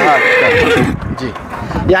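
A Marwari-Sindhi cross stallion neighs: one long whinny that falls in pitch and trails off about a second and a half in.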